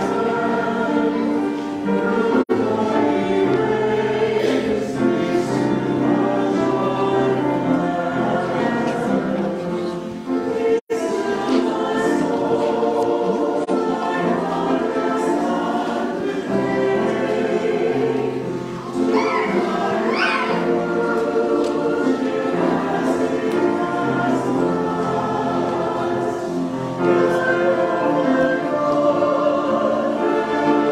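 A choir singing slow, sustained chords. The sound cuts out briefly twice, once about two seconds in and more deeply near eleven seconds.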